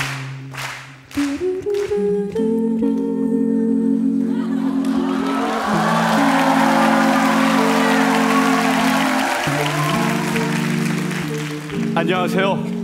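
An a cappella group of male and female voices singing held, slowly changing harmony chords without instruments. From about four seconds in, audience applause swells under the singing and dies away a couple of seconds before the end.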